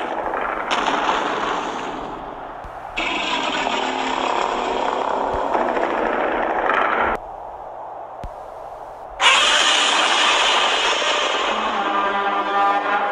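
Loud, dense rushing noise from borrowed film sound effects. It cuts in and out abruptly in three long stretches, with a quieter gap about seven to nine seconds in.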